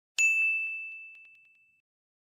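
A single notification-bell ding sound effect: one sudden strike with a clear high tone that rings and fades out over about a second and a half.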